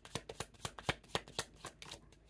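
A deck of tarot cards being shuffled by hand: a quick, even run of light card slaps, about eight a second.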